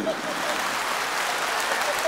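Audience applauding, an even, steady clapping.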